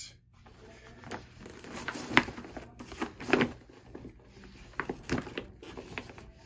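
A Solinco tennis racket bag being handled and turned over: irregular rustling and rubbing of its shell and straps, with a few sharp clicks along the way.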